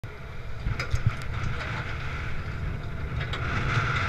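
Boat running in heavy wind, heard through a helmet-mounted camera's microphone: a steady low rumble with wind noise, and a few sharp knocks about a second in and another near the end.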